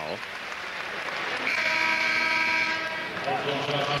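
Arena crowd noise, then a basketball arena horn sounds one steady, multi-tone blast lasting about a second and a half, starting about one and a half seconds in.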